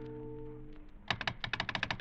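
A held music chord fades out, then about a second in a rapid, even run of sharp telephone clicks begins, roughly ten a second: a radio-drama sound effect of a caller working the telephone to raise the operator.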